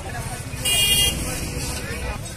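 A short, high-pitched vehicle horn toot a little over half a second in, the loudest thing here, over the chatter of a crowded street market and a low traffic rumble.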